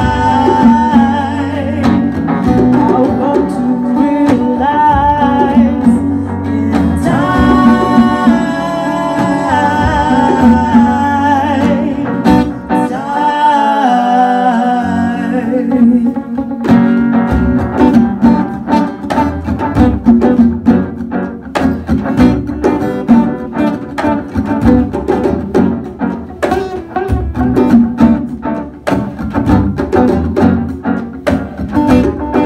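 Live acoustic band: a woman singing over acoustic guitar and djembe hand drums. About halfway through, the music changes abruptly to a sparser, more percussive part with quick strummed and struck strokes and less sustained voice.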